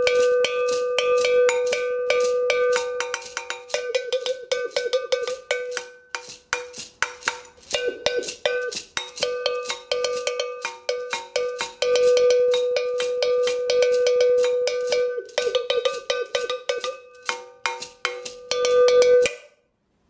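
Forged-metal double agogo bell struck rapidly with a wooden stick in a rhythmic pattern. The bell is left ringing open for stretches and muted by the holding hand for others, so its ring alternates between long and cut short. The playing stops shortly before the end.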